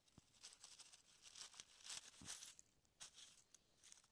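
Faint crackling and rustling of dry fallen leaves being disturbed, a run of small crackles that is densest around the middle and dies away near the end.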